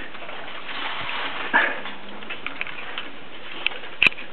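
Caged pet birds: a short call about one and a half seconds in, then a few light clicks and taps, over a steady hiss.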